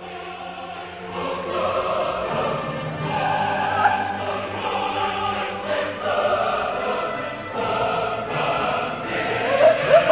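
Dramatic choral music with operatic singing, swelling in loudness about a second in and holding long sustained notes.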